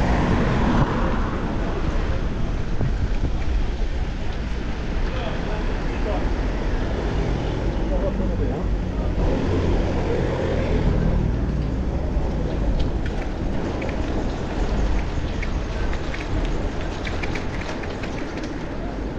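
Wind rushing over the microphone of a moving bicycle, a steady deep rumble, with town car traffic around it.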